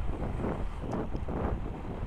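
Wind buffeting the microphone of a moving motorcycle, a gusting rumble with engine and road noise low underneath.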